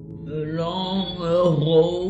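A woman's voice reciting the opening words of a line of verse over a soft, steady ambient music drone; the voice enters about a third of a second in.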